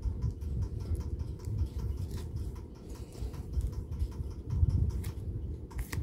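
Plastic-sleeved nail sticker sheets being handled and shuffled: soft rustling and crinkling with scattered small clicks, over a low rumble.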